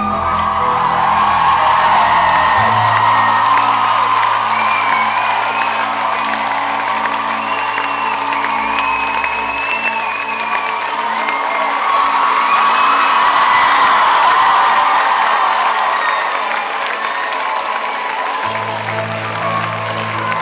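Live rock band playing an instrumental passage with long held low notes, while the crowd cheers, screams and whistles loudly over it. The low notes drop out about halfway through and come back near the end.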